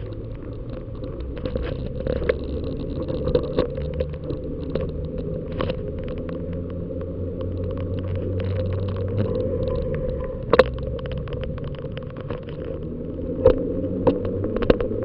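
Steady road rumble and wind noise on the microphone of a camera mounted on a bicycle rolling along tarmac, with scattered clicks and rattles. There is a sharper knock about ten and a half seconds in and another near the end.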